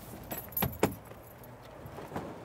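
Luggage being unloaded from a van: a few sharp clunks and rattles of hard-shell cases and a metal luggage trolley within the first second, the last the loudest.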